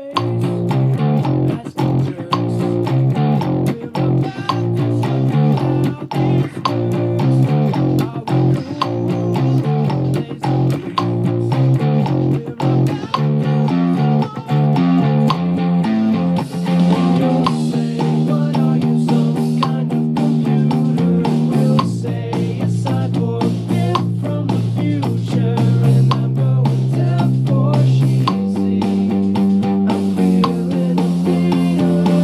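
Electric bass guitar playing a song's bass line at full speed: quick runs of plucked notes at first, moving to longer held low notes in the second half.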